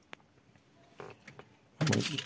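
A sharp click and a short, faint rustle from turning a car's ignition key, which switches on the dashboard displays. A man starts speaking near the end.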